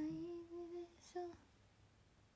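A girl humming a long held note that rises slightly in pitch, then a short second hum about a second in, stopping by a second and a half.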